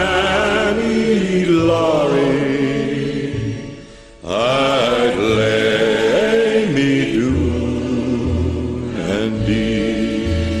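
Sing-along chorus with orchestral accompaniment, in old LP sound. A held closing chord fades out about four seconds in, and the next song in the medley starts straight after.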